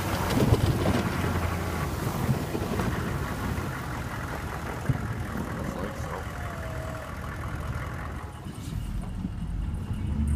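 GMC Sierra 2500 plow truck running while its snow plow blade pushes ice-pellet snow. There is a rushing, scraping noise over a steady low engine note, loudest at first and easing off over the last few seconds.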